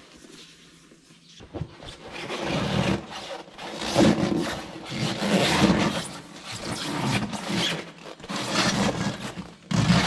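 New rubber inner tube being worked by hand into a tractor tire casing: rubber rubbing and scraping against rubber in irregular strokes. The rubbing starts about a second and a half in, after a brief quiet moment.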